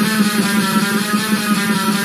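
Distorted electric guitar on a microtonal neck in 18-tone equal temperament, five strings tuned to a sort of drop D, playing a fast picked metal riff over a steady low note through a small Ibanez Tone Blaster amp, with a fast black metal drum loop.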